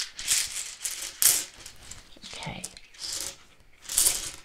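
Rune tiles rattling and clicking together inside a cloth pouch as they are shaken and stirred, in several short bursts.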